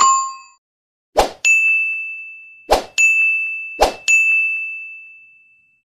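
Notification-bell ding sound effect of a subscribe animation, rung three times, each ding ringing out slowly and each led in by a short whoosh. A shorter ding fades out right at the start.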